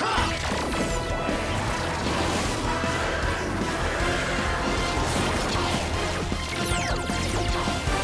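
Superhero morphing-sequence soundtrack: driving, energetic music layered with crashing impact effects, and a few falling swooshes near the end.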